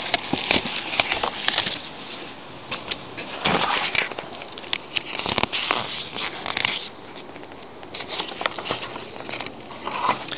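Paper magazine pages, a printed card and plastic wrapping rustling and crinkling as they are handled, in irregular bursts with small clicks.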